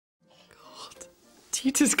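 Faint whispering, then a woman speaking from about a second and a half in.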